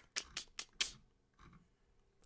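A few quick clicks, about four in the first second, then near quiet: a computer mouse being worked to scroll down a web page.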